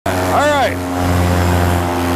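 Flat Top paramotor engine and propeller running steadily at cruise power in flight, a loud even drone. About half a second in, a brief vocal sound rises and falls in pitch over the drone.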